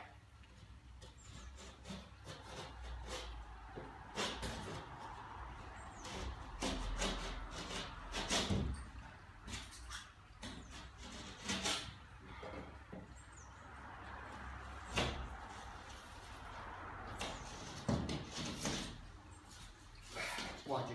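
A Stanley knife cutting the paper backing of a sheet of plasterboard along a scored line, heard as a series of short irregular scraping strokes and knocks as the board is handled and folded along the cut.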